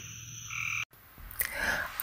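Frogs calling outdoors at dusk, short repeated high-pitched calls over a steady insect-like background hum, cut off abruptly a little under a second in, followed by a brief silence and faint sound returning.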